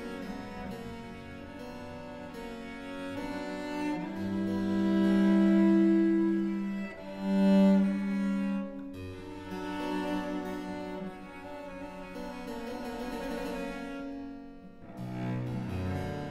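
A Baroque cello, made in Paris about 280 years ago, plays a slow movement with a harpsichord: long bowed cello notes that swell, over the harpsichord's plucked chords. The cello is loudest about halfway through. Near the end there is a short break before a lower phrase begins.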